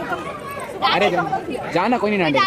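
Speech only: voices talking, with a short exclamation of "arey" about a second in.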